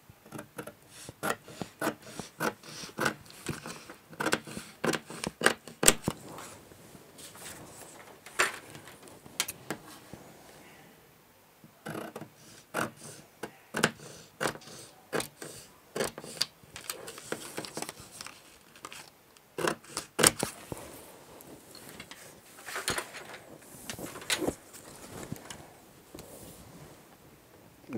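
Scissors cutting through stiff pattern paper in runs of quick, crisp snips, with a short pause about eleven seconds in and fewer snips near the end.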